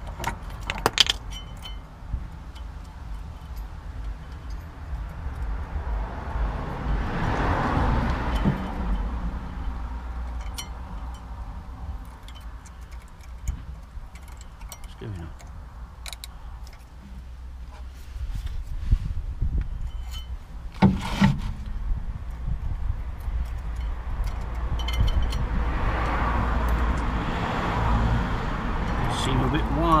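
Light metallic clinks and rattles, scattered and irregular, as new steel-backed brake pads and their spring retaining clips are handled and worked into the rear brake caliper of a VW Golf MK4. A steady low rumble runs underneath.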